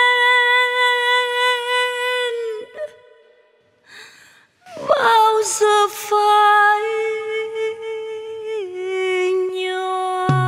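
A female vocalist sings long, held notes with little accompaniment beneath. The first note breaks off after about two seconds. After a short pause with a breath, a second long note slides in and drops a step near the end.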